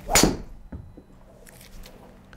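A driver clubhead striking a teed golf ball off a hitting mat: one sharp crack about a fifth of a second in, followed by a much fainter knock a moment later.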